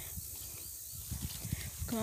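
Footsteps and phone-handling thuds while walking over grass and dry straw, irregular and low, over a faint steady high hiss.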